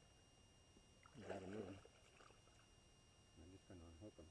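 A man's voice saying a few indistinct words twice, once about a second in and again near the end, over near silence.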